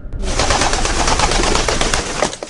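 Pigeons flapping their wings: a dense rustle of many quick wingbeats that starts suddenly a moment in and stays loud.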